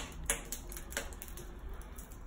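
Wood fire crackling in a brick oven's open firebox, with a few faint snaps.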